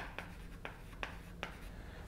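Chalk writing on a blackboard: a handful of light taps and short strokes as words are written.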